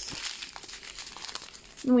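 Small plastic bags of diamond painting drills crinkling and rustling as they are picked up and handled, a busy run of fine crackles.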